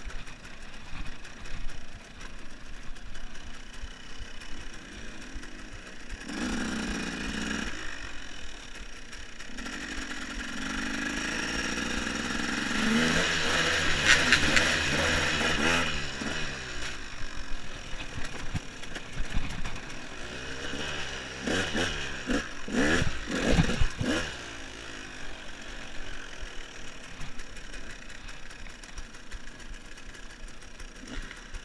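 KTM EXC enduro motorcycle engine ticking over and being revved, with a short rev about six seconds in, a long rise in pitch as it accelerates in the middle, and several quick throttle blips a little later before it settles again.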